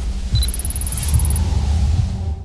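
Electronic sting for a logo animation: a short high beep, then a fast run of very high blips lasting about a second, over a steady deep rumble.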